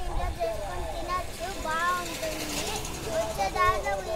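A young girl talking in a high child's voice.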